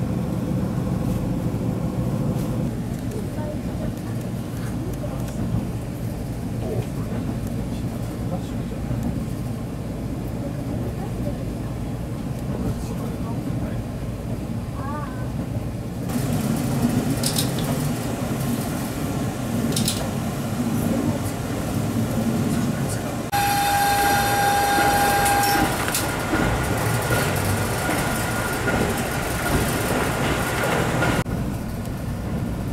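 North Rainbow Express diesel train heard from inside the car: a steady engine and running rumble as it travels along the track, changing abruptly at cuts. About three-quarters through, a steady tone sounds for about two seconds.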